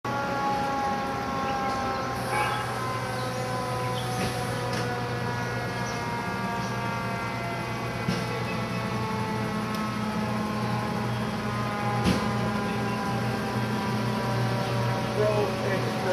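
Diesel engines of fire engines running at a fire scene: a steady low hum with a higher drone made of several tones that slowly falls in pitch. A single sharp knock about twelve seconds in.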